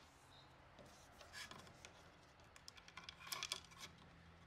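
Faint rustling and light clicks of Romex cable being pulled and fed into a blue plastic electrical box, thickening into a cluster of small clicks in the last part.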